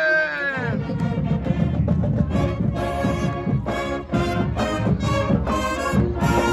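High school marching band playing on the march, with a drumline beat under the horns. The sound fills out about half a second in.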